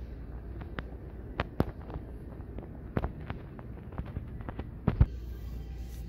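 Irregular sharp clicks and knocks, about a dozen, the loudest about five seconds in, over a steady low hum.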